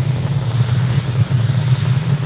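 Steady low rumble of a Falcon 9 rocket's nine first-stage Merlin engines firing during ascent, with a fainter hiss above it.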